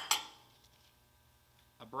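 A sharp metallic clink of stuffing-box packing parts knocked together, ringing briefly.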